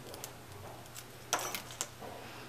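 Small metallic clicks and taps from an aluminium bumper case being unscrewed and pulled apart into its two halves with a small screwdriver, the sharpest taps about a second and a half in.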